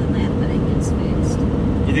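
Steady road and engine noise inside the cab of a moving motorhome: a continuous low rumble with a faint steady hum.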